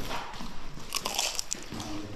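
Biting and chewing a fried samosa, its crisp pastry crunching close to the microphone, with a quick run of crunches about a second in.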